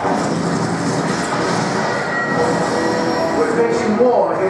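Movie soundtrack played through the room's loudspeakers: a loud, continuous mix of action sound effects.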